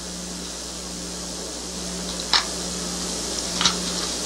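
Steady hiss with a low hum underneath: background noise of an old analog recording during a pause in speech. Two brief clicks sound, about halfway through and again near the end.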